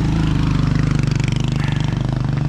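A motor vehicle's engine idling, loud and steady, with a fast, even throb.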